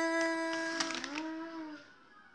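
A woman's singing voice holding a long note with no words. It dips briefly in pitch about a second in, settles into a second held note, then fades out near the end.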